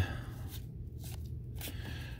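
Cardboard trading cards being flicked one by one through a hand-held stack: faint papery slides and soft clicks at irregular moments.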